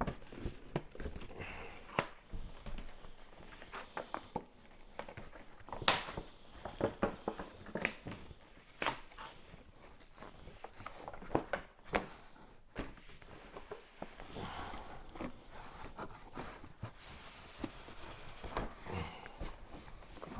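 A large cardboard shipping box being handled and opened: irregular knocks and scrapes of cardboard, with rustling and tearing of the packaging.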